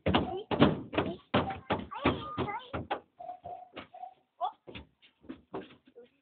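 Children's feet thumping on the wooden plank bed of a small truck as they run and jump, about three thumps a second for the first half, then only a few scattered, fainter ones. Short bits of children's voices come in between.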